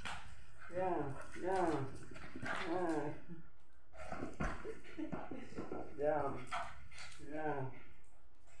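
A small dog whining and yelping in play, about five short cries that rise and fall in pitch, with a thump about halfway through.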